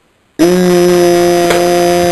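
A loud, steady buzzing drone that starts abruptly about half a second in and holds one pitch.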